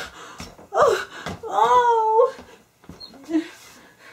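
A high-pitched voice whimpering and wailing without words, two drawn-out cries that slide up and down in pitch, followed by fainter sounds.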